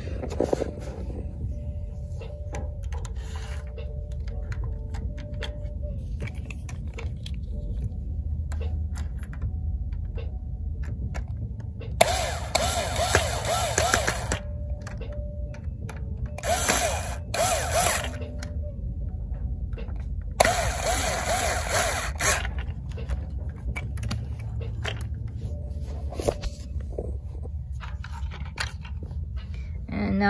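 Small power screwdriver running in three short bursts, each about two seconds long, driving screws back into the clear plastic coin mechanism of a capsule toy vending machine. Between the bursts, light clicks and handling of the plastic parts.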